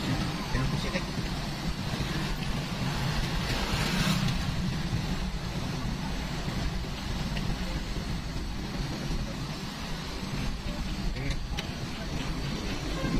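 Steady engine and road noise of a car driving slowly, heard from inside the cabin.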